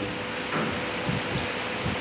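Steady room noise through the PA microphone, an even hiss, with a few soft low rumbles in the second half.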